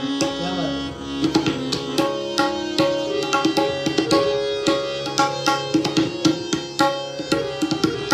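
Tabla and pakhwaj played together in a fast jugalbandi: dense, rapid drum strokes over a harmonium holding a steady melodic line. A bending low drum stroke slides in pitch about half a second in.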